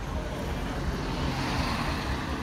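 A minibus driving past close by, its tyre and engine noise swelling in the second half, over a steady low traffic rumble.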